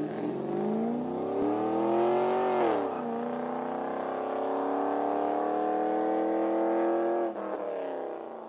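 Car engine accelerating hard, its pitch climbing, dropping sharply at a gear change about three seconds in, then climbing again through the next gear before easing off near the end.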